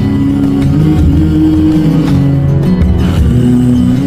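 A Nepali pop love song playing, its melody moving in long held notes that change pitch every second or so.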